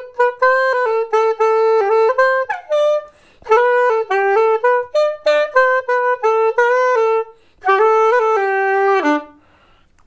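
Yamaha Venova YVS-100 soprano, a small single-reed plastic wind instrument, playing a melody in the key of G in three phrases with short breaks between them; the playing stops a little before the end.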